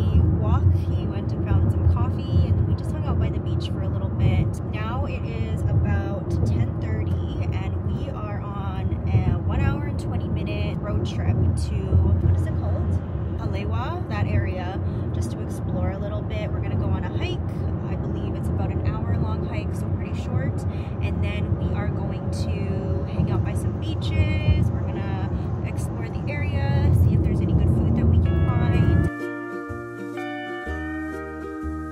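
Steady low rumble of road and engine noise inside a moving car's cabin, under voices. About a second before the end it cuts to music.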